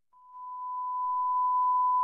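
A steady single-pitch test-tone beep, the kind that goes with TV colour bars, fading in over about the first second and then holding.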